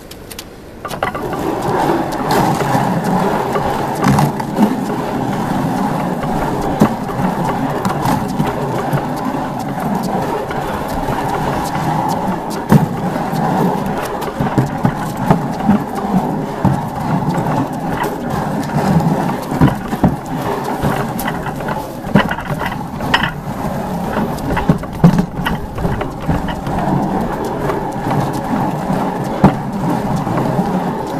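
Weighted training sled scraping continuously across a concrete surface as it is dragged, starting about a second in, with occasional knocks and rattles.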